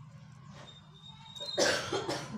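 A person coughs about one and a half seconds in, short and loud, over a low steady hum.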